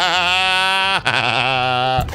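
A person's voice in two long, wavering high cries, one after the other, each about a second long.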